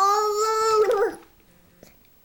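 A toddler's whining cry: one held, pitched note of about a second, made with a toothbrush in his mouth, that wavers and breaks off at the end.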